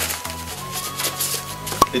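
Gloved hands patting and smoothing a damp salt-and-egg-white crust over a whole fish on parchment paper, soft rubbing and scraping, with one sharp click near the end. Background music plays underneath.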